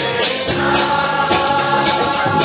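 Kirtan: a group of voices singing a devotional chant together, with a held note running through. Small hand cymbals (kartals) keep a steady beat of about three strokes a second.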